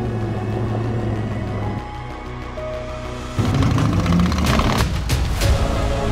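Background music with held notes that grows louder and fuller a little past halfway, with a few sharp hits near the end.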